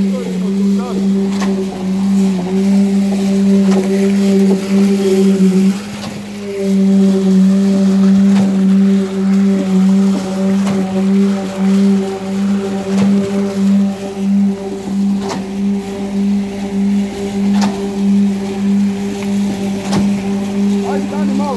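Truck-mounted concrete pump running steadily while concrete is pumped out through the end hose: a loud, even engine hum with a slight regular pulsing and a few faint knocks. It dips briefly about six seconds in, then picks up again.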